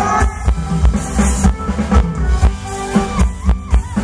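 Thai ramwong dance music from a band playing through a PA, a steady drum-kit beat of kick drum and snare under a melody line.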